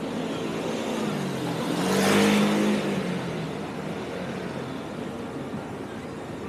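A motor vehicle passes close by on the street. Its engine note and tyre noise swell to a peak about two seconds in, then drop in pitch and fade as it moves away.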